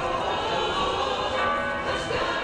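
Church bells ringing, a dense blend of sustained, overlapping tones.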